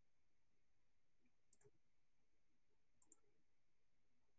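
Near silence with two faint computer mouse clicks, each a quick double click, about a second and a half and three seconds in.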